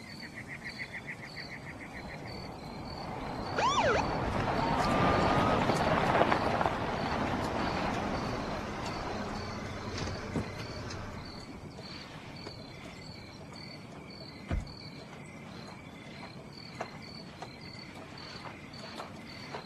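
Crickets chirping at night in regular, evenly spaced pulses. A swelling rush of noise rises about three seconds in, peaks a few seconds later and fades away. A few single soft thumps come near the end.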